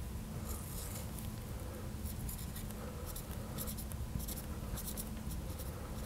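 Marker pen writing on a glass lightboard: short scratchy strokes in quick groups as a word is written, over a steady low hum.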